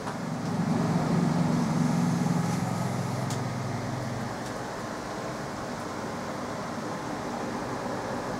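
Steady mechanical hum and hiss, with a louder low hum for the first four seconds or so that then drops away.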